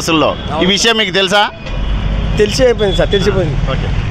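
A motor vehicle passing on the street: a low engine rumble comes in about halfway through and carries on under voices.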